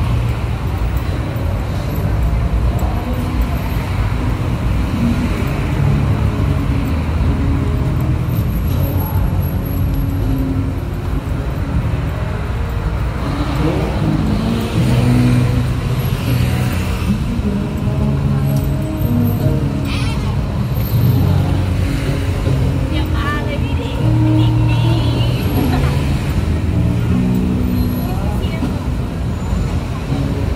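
Busy city street: steady traffic noise from cars and other engines running on the road, mixed with the chatter of passersby on a crowded sidewalk.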